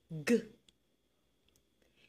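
Speech only: a voice sounding out the letter sound /g/ ("guh") once, with a falling pitch, then quiet.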